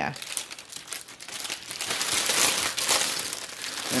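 Plastic mailer packaging crinkling as it is handled, with many small crackles that grow louder about two seconds in.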